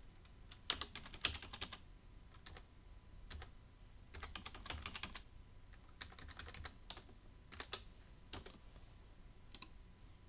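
Computer keyboard typing in short bursts of keystrokes with pauses between. The busiest runs come about a second in and again around four to five seconds in, with scattered single keystrokes later.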